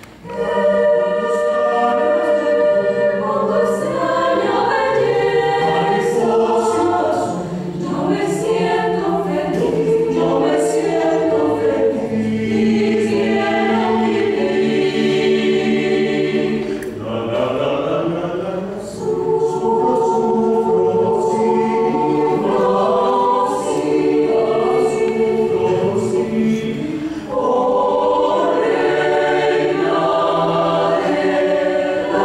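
A mixed choir of women's and men's voices singing a cappella in sustained chords, the parts moving together in harmony. There is a brief break for breath right at the start and a softer passage a little past the middle.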